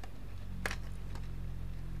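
Low steady hum with a faint single click about two-thirds of a second in.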